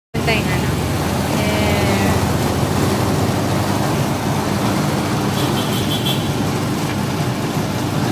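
Electric sugarcane juice press running steadily, its steel rollers crushing cane stalks, over the steady noise of street traffic.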